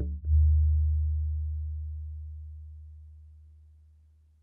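Elk-hide shamanic frame drum: two final strokes in quick succession right at the start, the second the loudest, then its deep low boom rings on and fades away steadily.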